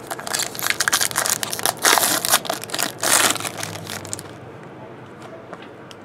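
Foil wrapper of a 2013 Tribute baseball card pack crinkling and tearing as it is pulled open by hand. The dense crackle lasts about four seconds, then stops.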